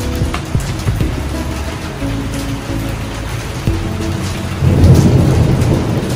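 Rain with a low roll of thunder swelling about four and a half seconds in, under background music with held notes.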